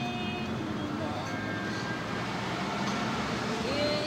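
Steady road noise of a moving car, with a faint voice over it.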